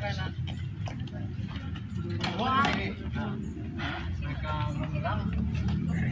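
Voices talking in short bursts over a steady low rumble, like an idling vehicle or background traffic.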